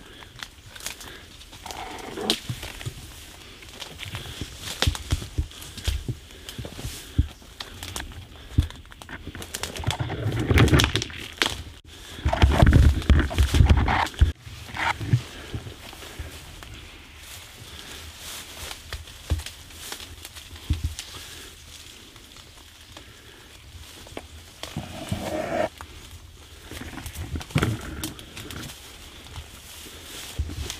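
Walking through dense dry scrub: footsteps on leaf litter, twigs snapping, and branches scraping and brushing past. Heavy low rumbles of wind or handling on the microphone come twice near the middle.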